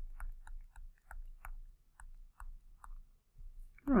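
Light, irregular clicks and taps of a stylus tip on a tablet surface as handwriting is drawn, about two to three a second, over a faint low hum.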